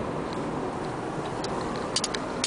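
Steady road and engine noise inside a moving car, with a couple of sharp clicks near the end.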